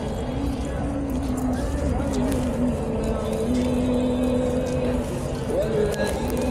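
Busy street noise dominated by a motor vehicle engine running close by: a low rumble with a steady hum that shifts in pitch briefly partway through, with people's voices in the background.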